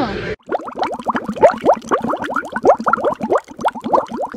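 Water bubbling: a quick, uneven string of short rising plops, several a second, starting abruptly just after the start.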